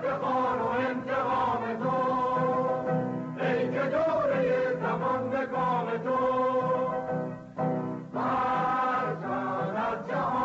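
A choir singing a Persian revolutionary workers' anthem in long held phrases, with a short break about three seconds in and another near eight seconds.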